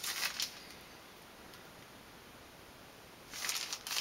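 Clear plastic outer sleeve of a vinyl LP rustling and crinkling as the record is picked up and handled, in two short spells, one at the start and one near the end, with quiet room tone between.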